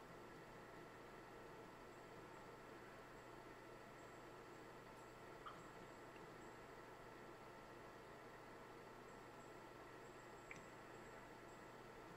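Near silence: a steady faint hiss of room tone, with two tiny ticks, one about halfway through and one near the end.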